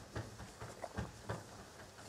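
Soft, irregular pats and light rubbing of children's hands on the clothed backs of the children in front of them during a back massage: a handful of dull taps over two seconds.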